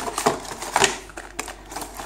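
Cardboard packaging being handled: a small cardboard compartment scraping and knocking against the box as it is pulled out, in several short scrapes and taps, the loudest a little before halfway through.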